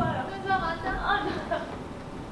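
Indistinct talking and chatter of voices in a large hall, easing off about a second and a half in.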